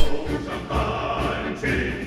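A choir singing over orchestral music: the closing theme song of a Chinese war drama.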